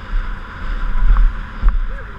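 Wind buffeting the microphone of a helmet-mounted camera on a mountain bike riding fast over a concrete sidewalk, a loud rumble with steady tyre hiss. Two sharp knocks, about a second in and again near the end, as the bike jolts over the pavement joints.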